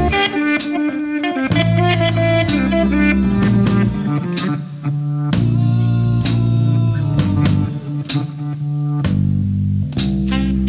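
Live band instrumental break: an electric guitar picks a quick lead line over bass guitar. The bass holds long notes and drops out briefly a few times.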